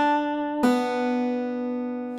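Acoustic guitar pull-off on the second (B) string: the note at the third fret is pulled off to the open string a little over half a second in, stepping down in pitch, and the open note rings on, slowly fading.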